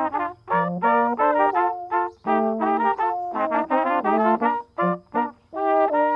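Brass trio playing a tune in three-part harmony, a flugelhorn on top with a larger upright-belled horn below, in short detached notes with brief breaks about two seconds in and again near five seconds.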